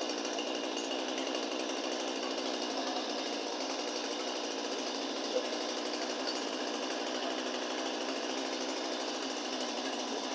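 Stihl MS 261 C-M chainsaw's two-stroke engine running steadily with the chain brake on, warming up from a cold start before its M-Tronic recalibration.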